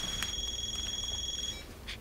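Phone ringing with a steady, high electronic ring tone that cuts off about a second and a half in, when the call is answered.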